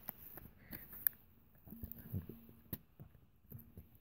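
Faint handling of a plastic Blu-ray case being opened, with two sharp clicks, one about a second in and another near three seconds.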